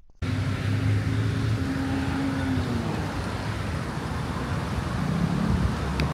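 Road traffic: engines of passing vehicles over a steady hiss, with one engine hum falling away in pitch about halfway through and another rising near the end.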